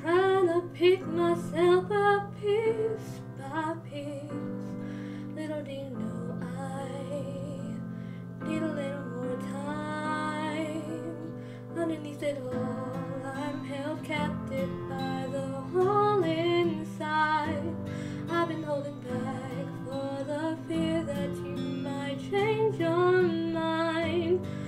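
Female voice singing along to a karaoke backing track with guitar.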